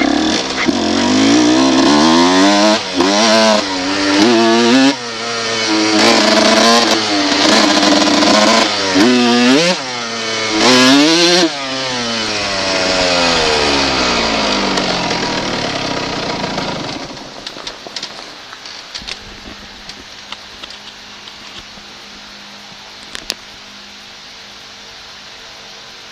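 A 1990 Honda CR125R's two-stroke single-cylinder engine being ridden, its revs rising and falling in repeated short blips, then running more steadily at lower revs. About two-thirds of the way through the engine stops, leaving only a few faint clicks.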